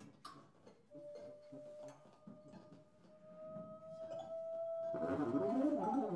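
Free-improvised music for voice, tuba and percussion: one long held tone that rises very slightly, over scattered small clicks and taps. About five seconds in, a louder, dense tangle of wavering pitches swells up.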